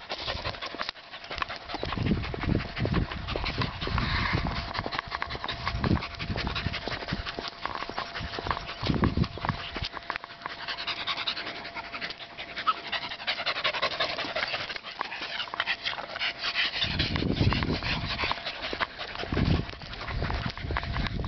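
A mixed-breed dog panting as it walks on a leash, in fast, rasping breaths, with a few low rumbles on the microphone.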